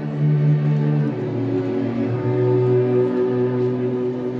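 Instrumental opening of a live concert: slow, sustained chords held in the low and middle range, changing about a second in and again about two seconds in, with no singing.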